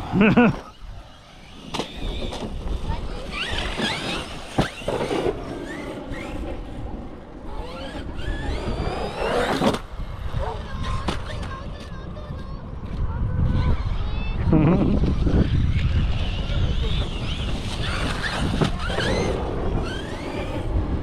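Large radio-controlled electric monster truck running, its motor whine rising and falling in pitch as it revs up and backs off, with sharp knocks from the truck landing and tumbling.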